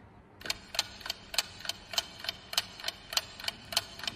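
Clock-ticking sound effect, a quiz countdown timer: even ticks about three a second, starting about half a second in.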